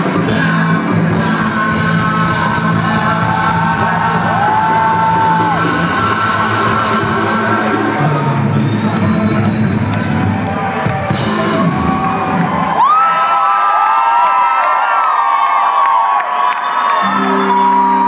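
Live Latin pop concert heard through a hall PA: the band and singers performing, with the crowd whooping and yelling along. About thirteen seconds in, the bass drops out, leaving voices over the crowd, and low held tones come back near the end.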